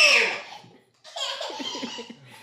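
A high, drawn-out "whoa" call trailing off, then about a second in, breathy laughter in short pulses during a playful chase.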